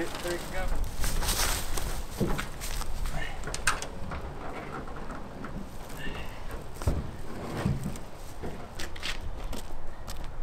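An upside-down jon boat being carried over leaf litter and set down onto wooden pallets: footsteps, rustling and handling noise, with a few dull thumps, the clearest about seven to eight seconds in. Brief, indistinct voices come through now and then.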